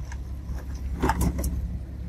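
A boat engine idles with a steady low rumble, and about a second in come a few quick metallic clicks and rattles from the wire crab trap and the crabs being handled.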